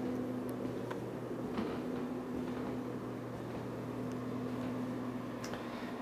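A steady low electrical hum with several even overtones, holding constant throughout, and a few faint clicks or knocks.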